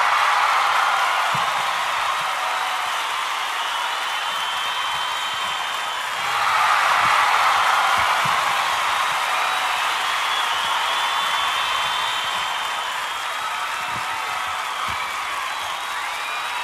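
Football stadium crowd cheering and applauding, a continuous roar that swells again about six seconds in, with a few high whoops or whistles over it.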